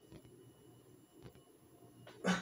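Near silence: quiet room tone, with two faint soft sounds, one near the start and another about a second later.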